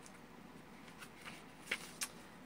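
Oracle cards being handled by hand: a few soft ticks about a second in, then one sharper click near the end.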